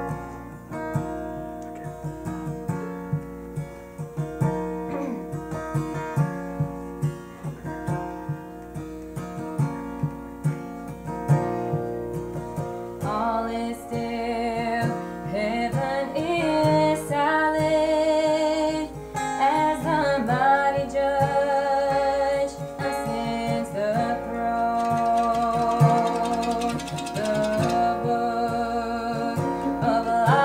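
Acoustic guitars strumming a song's introduction, joined about thirteen seconds in by a woman singing the lead over them.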